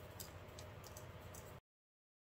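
Near silence: faint room hum with a few light ticks as sand is sprinkled from a plastic spoon onto wet epoxy resin in a silicone mold. The sound cuts out completely near the end.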